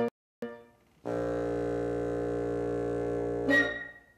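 Wind quintet of flute, oboe, clarinet, French horn and bassoon playing the closing cadence of a polka: a short chord, a pause, a chord held for about two and a half seconds with the bassoon low underneath, then a short, louder final chord.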